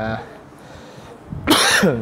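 A man coughs once, loudly, near the end, right after the tail of a drawn-out hesitation sound "uh".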